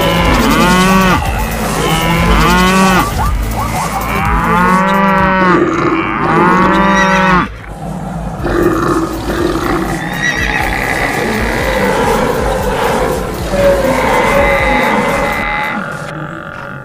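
A stampede soundtrack of animal calls over a continuous low rumble. Cattle moo again and again, about once a second, in the first half; the mooing cuts off sharply about seven and a half seconds in, and a looser jumble of other animal calls follows.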